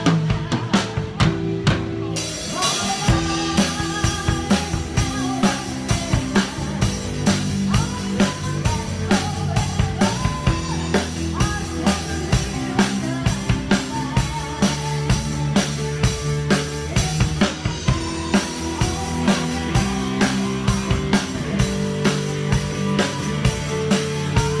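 Acoustic drum kit (snare, bass drum and cymbals) played with sticks in a steady groove along to a recorded song with melody and bass.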